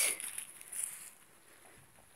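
A hand scraping and rummaging through loose, dry garden soil, giving a soft rustle that fades out about a second in.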